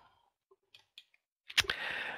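A pause in speech heard through a headset microphone: a couple of faint clicks about a second in, then a short burst of breathy noise near the end.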